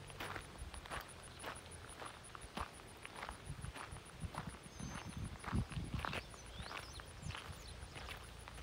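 Footsteps of a person walking across mown grass, about two steps a second.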